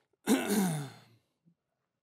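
A man's breathy, groaning exhalation into a handheld microphone, falling in pitch and lasting under a second, voiced mid-sentence as an exasperated filler.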